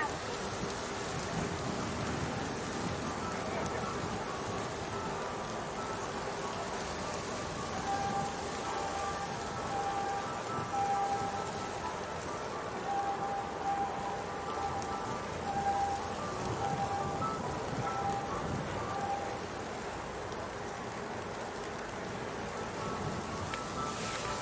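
Steady waterfront ambience: an even hiss of wind and water, with faint broken tones drifting in between about 8 and 19 seconds in.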